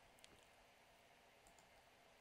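Near silence: room tone with two faint clicks from the computer at the desk, about a quarter second in and again about a second and a half in.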